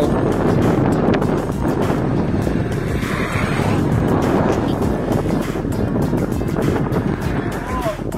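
Wind rushing and buffeting over the microphone of a camera riding on a moving bicycle, a loud, steady rumbling noise.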